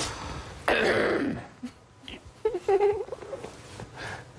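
A man's stifled laughter: a loud rush of breath about a second in, then short, broken, high-pitched giggles near the end.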